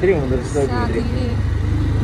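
Motorcycle engine running steadily under way, a low continuous rumble, with a man's voice talking over it.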